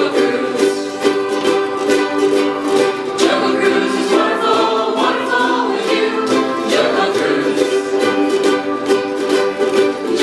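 A large ensemble of ukuleles, joined by a few acoustic guitars, strumming chords in a steady rhythm while a group of voices sings along.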